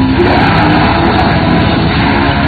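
Symphonic death metal band playing live at full volume: heavily distorted guitars holding low notes over rapid, dense drumming, the held note changing pitch a fifth of a second in.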